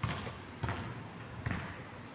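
Footsteps of a person walking at an easy pace on stone paving, three dull thuds about three-quarters of a second apart.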